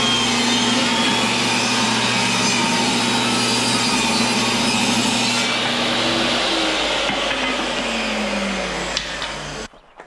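Portable table saw ripping a strip of wood, running loud and steady. About five and a half seconds in the cut finishes and the blade winds down, its pitch falling, until the sound stops abruptly just before the end.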